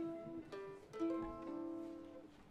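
Mandolin and violin playing a few slow, held notes together, with new notes coming in about half a second and a second in.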